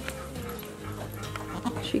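Soft background music with held notes that change pitch in steps, with a word of speech at the very end.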